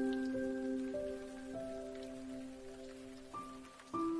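Slow instrumental piano melody, one sustained note after another, laid over a steady sound of falling rain; a new, higher note comes in near the end.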